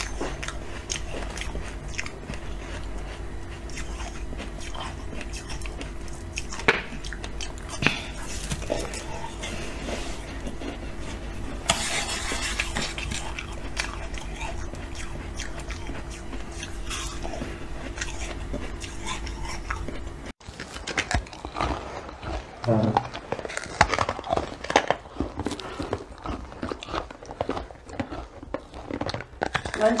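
Teeth biting and crunching frozen ice, in sharp separate crunches over a steady electrical hum. About twenty seconds in the hum stops abruptly and denser crunching follows, with a brief voice.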